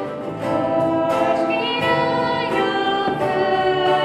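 A slow hymn sung by a group of voices, in held notes that change every second or so.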